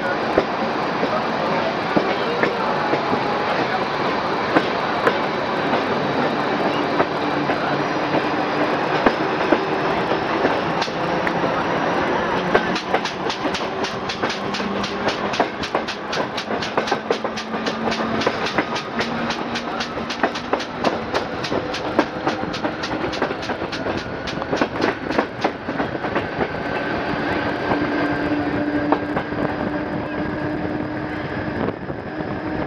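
CP 2000 series electric multiple unit heard from an open window while gathering speed: steady rolling noise with a faint motor whine rising slowly in pitch. Near the middle a fast, even clickety-clack of wheels over rail joints sets in, about three or four clicks a second, and fades again near the end.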